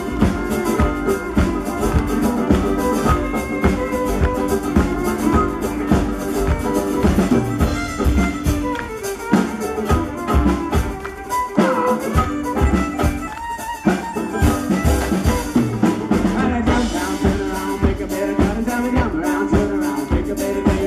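Irish folk band playing live, an instrumental passage with a fiddle lead over strummed acoustic guitar, banjo and double bass, driven by a steady beat.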